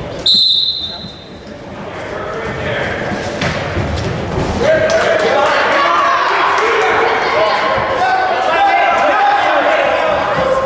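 A referee's whistle blows one short, shrill blast about a quarter second in, starting the wrestling. From about five seconds in, coaches and spectators shout over one another.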